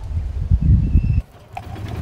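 A low rumbling noise for about a second, then a sudden break, then a golf cart's engine running steadily.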